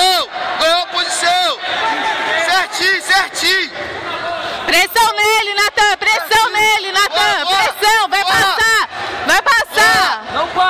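Men's voices shouting over one another, with crowd babble around them.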